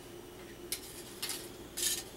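Metal-foil craft feathers being handled on a metal baking tray: a sharp click, then two short rustling scrapes, the second louder, over a faint steady hum.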